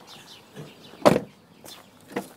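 A single sharp thump at a car door about a second in.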